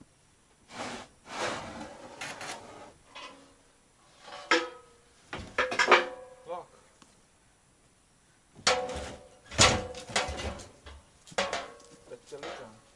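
Cargo being shifted and pulled out of the bed of a UAZ truck: scraping, knocking and short squeaks in several bursts with quiet gaps between.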